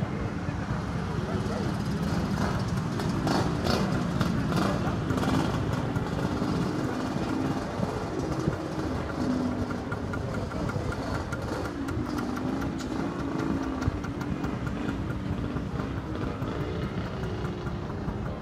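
Outdoor background ambience: indistinct voices of people around, over a steady low rumble.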